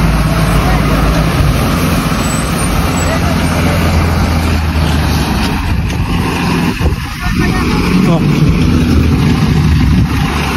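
Diesel engine of a Tata tipper dump truck running as the truck moves slowly across the yard, a steady low drone that dips briefly about seven seconds in.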